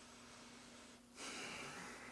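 Near silence, then from about a second in a faint, airy breath: a person breathing out or in through the nose.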